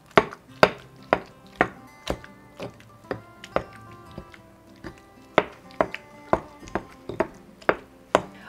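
Stone pestle knocking and grinding in a stone molcajete as avocados are mashed for guacamole: sharp knocks about twice a second, with a short pause around the middle. Faint background music underneath.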